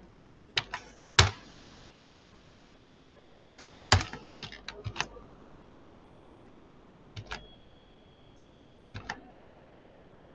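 Computer keyboard keys tapped in short clusters of sharp clicks, with pauses of a second or more between them, as code is typed into an editor. The loudest strokes come about a second in and at around four seconds.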